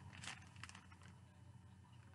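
Near silence: room tone with a few faint, brief rustles early on.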